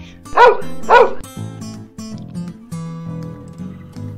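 A dog barks twice in quick succession, answering as if on cue. Then acoustic guitar music starts and plays on.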